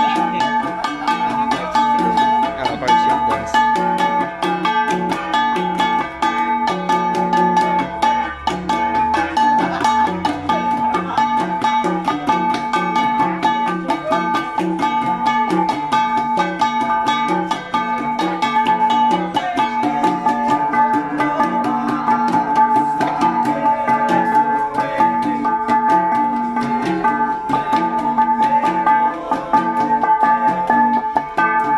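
Live Cordillera percussion ensemble of flat bronze gongs (gangsa) and hand drums, beaten by hand in a fast, steady interlocking rhythm. The gongs give a ringing, metallic tone that holds at a few steady pitches throughout.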